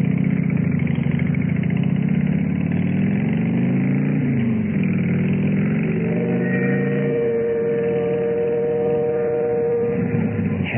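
Motorcycle engine sound effect in an old radio play: the bike runs steadily, its pitch rising and falling about four seconds in. A steady higher tone joins about six seconds in. The sound is narrow-band and dull, as on an old radio recording.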